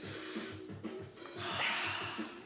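A man breathing out heavily, a short hiss of breath at the start and a longer one in the second half, over background music.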